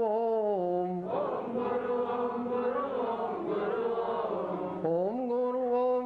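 Call-and-response devotional chanting: a single voice chants a line with gliding pitch, and about a second in a congregation of voices answers together for about four seconds. The lead voice takes up again near the end.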